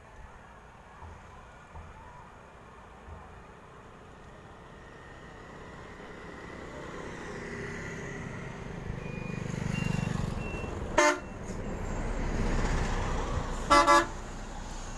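A motorbike passes close by, its engine and tyre noise swelling to a peak about ten seconds in and fading. Then two short vehicle-horn toots, one just after the pass and a louder one near the end.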